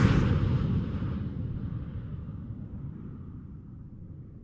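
Low, reverberant rumble of a logo sound-effect impact, fading out steadily after the hit at the very start.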